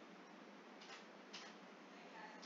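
Near silence with two faint clicks of a computer mouse, about half a second apart.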